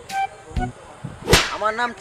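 A single sharp slap, the loudest sound here, about one and a half seconds in, followed by a man's voice.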